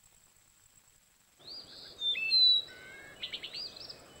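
A songbird singing: a run of clear whistled chirps and gliding notes that starts about a second and a half in, after near silence.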